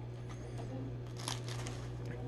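Faint rustling of a plush toy as a dog tugs at it, with a brief louder scuff just past halfway, over a steady low hum.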